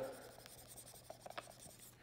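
Faint dry-erase marker work on a whiteboard: light rubbing with a few small ticks about a second in.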